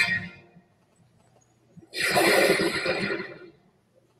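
Trailer soundtrack: the background music fades out within the first half second. After a second of silence comes a single noisy sound effect of about a second and a half, which rises in suddenly and dies away.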